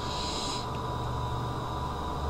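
Steady low electrical hum with background hiss, with a brief soft hiss in the first half second.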